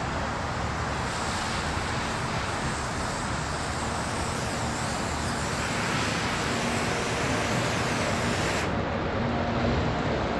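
Garden hose spraying water over a car's hood and windshield in a steady hiss, rinsing the car down before it is soaped and washed.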